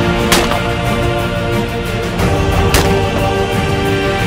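Two shots from a 12-gauge Caesar Guerini Invictus I Sporting over-and-under shotgun, the first just after the start and the second about two and a half seconds later, each a sharp crack with a short tail, heard over background music.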